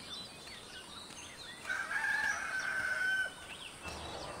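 A rooster crowing once, one long call of about a second and a half near the middle, over faint scattered chirps of small birds.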